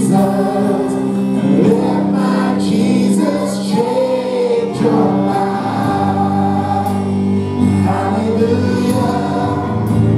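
Live worship band and congregation singing a praise song: group voices over held keyboard chords and electric guitar.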